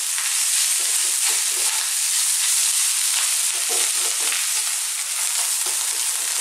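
Cold cooked rice frying in oil in a wok over very high heat: a steady sizzle, with the irregular scrape and rustle of a spatula stirring and turning the rice.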